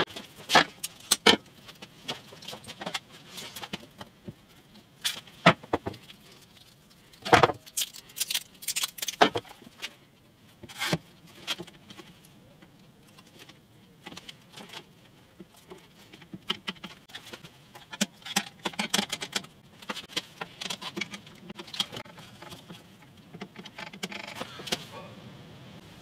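Small plastic quick-release bar clamps being handled, positioned and tightened on a guitar headstock to hold glued binding. Irregular clicks, rattles and knocks come in scattered clusters with pauses between.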